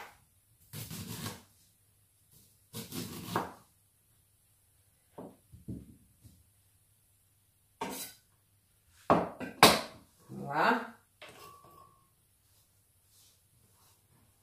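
A sharp knife cutting the kernels off fresh corn cobs on a wooden chopping board: short scraping strokes a second or two apart, with two sharp knocks on the board about nine seconds in.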